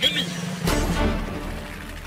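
Cartoon crash sound effect of a toy helicopter coming down: a sudden hit about two-thirds of a second in, with a low rumble that fades, over background music.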